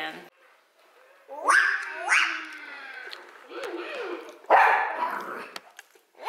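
Dog barking: four or five sharp barks, each rising in pitch, starting about a second in.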